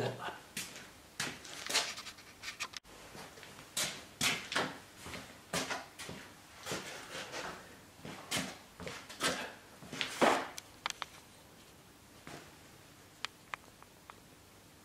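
Spanners being fetched and handled: irregular clinks, rattles and knocks of metal tools for about ten seconds, then a few sharp clicks near the end.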